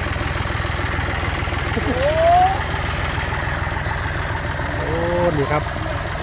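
John Deere 5050D tractor's three-cylinder diesel engine idling steadily, with a short rising vocal sound about two seconds in.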